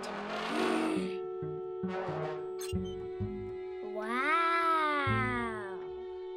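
Cartoon soundtrack: held musical chords, with a short whoosh at the start and a breathy gasp about two seconds in. A long sliding tone with many overtones rises and then falls near the end.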